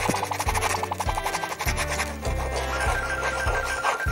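Background music over a rapid dry scratching of a broad felt-tip marker scrubbed back and forth across card.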